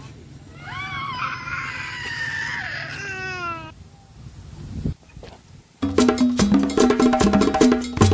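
A young child's high-pitched whining cry lasting about three seconds. About six seconds in, loud background music with a steady percussive beat comes in.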